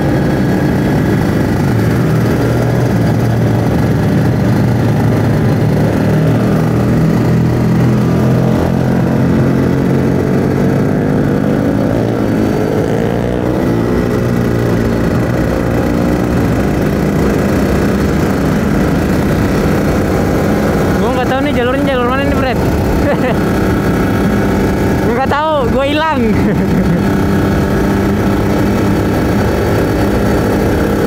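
Kawasaki Ninja RR 150 two-stroke single-cylinder engine running under way, its pitch rising and falling with the throttle. Twice, about two-thirds of the way through, a brief warbling tone sounds over it.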